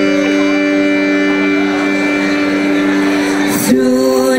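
Live bluegrass band holding one long sustained chord, with the fiddle bowing steady held notes. Near the end the notes change as the playing moves on.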